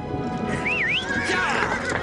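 A cartoon horse whinnies about half a second in, over background music, followed by hooves starting to clip-clop as the horses set off.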